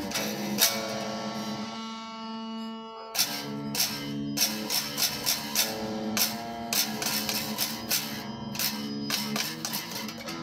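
Electric guitar played: a chord struck just after the start is left to ring and fade, then from about three seconds in a steady run of picked strums, two or three a second.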